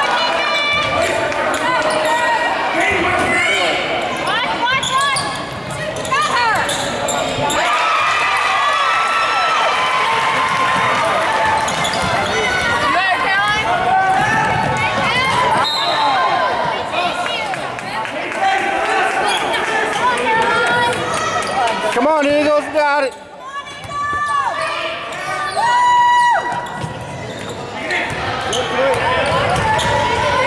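Basketball bouncing on a hardwood gym court during play, with indistinct shouts and chatter from players and spectators.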